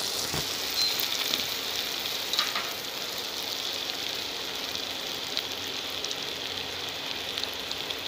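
Chopped onion, tomato and chillies sizzling steadily in hot oil in a non-stick pan while being sautéed, with a few light clicks.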